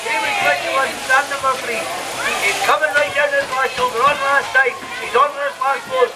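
Fast, excited speech from a race commentator, over a steady hiss from sheep-shearing handpieces running.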